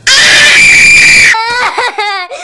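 A loud, harsh scream held for over a second, breaking into a high-pitched voice wailing with a wavering pitch.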